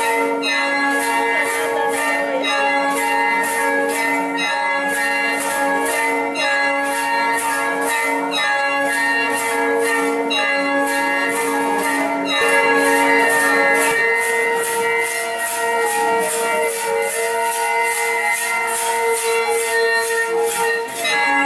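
Traditional dance music played on wind pipes: several steady, held droning tones, the lowest dropping out about two-thirds of the way through. Over them run regular bright jingling strikes, about two a second, quickening in the second half.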